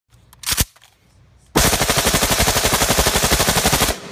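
A single gunshot, then after about a second a long, rapid burst of fully automatic gunfire lasting about two and a half seconds, its shots evenly spaced at roughly a dozen a second.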